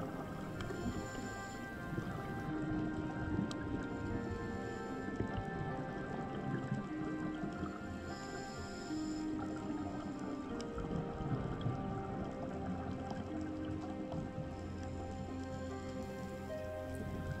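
Background music with soft, held notes that shift slowly.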